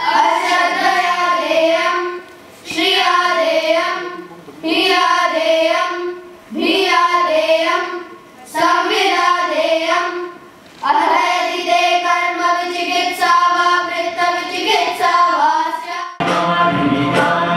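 A group of boys singing a devotional song in unison, in short phrases of about two seconds with brief breaks between them, then a longer sustained phrase in the second half.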